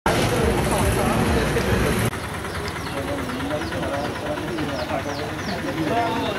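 Vehicle engine rumble and traffic noise for about two seconds, cut off abruptly. Then several people talk at once, with a few short high chirps.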